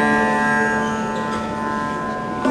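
Sitar: a single plucked note ringing out and slowly fading, its many overtones sustaining.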